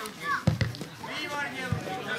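Young children's voices shouting and calling out during a football game, with a few short thumps of the ball being kicked about half a second in and near the end.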